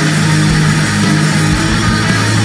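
Black thrash metal recording: dense distorted electric guitar riffing over fast, pounding drums, loud and unbroken.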